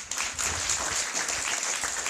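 An audience applauding: many hands clapping at once, breaking out at the start and holding steady.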